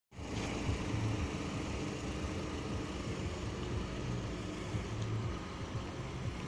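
Opel Astra hatchback engine idling steadily with a low hum.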